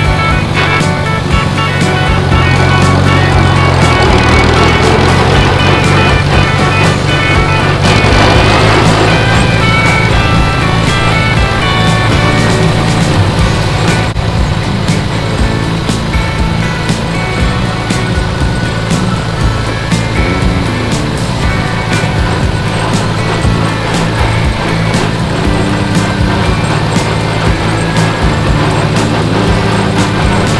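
Farmall tractor engine running steadily at road speed, with background music playing over it.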